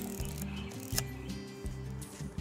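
Background music with steady low notes, and a single sharp click about a second in: a Pentax 6x7's mirror and shutter firing for a slow exposure.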